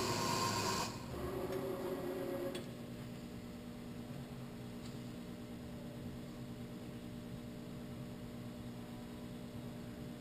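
Clausing Kondia CNC knee mill's powered axis drives moving the table under a programmed bolt-hole cycle: a whirring motor whine in two moves over the first two and a half seconds, the first louder, then the machine sits at a steady hum.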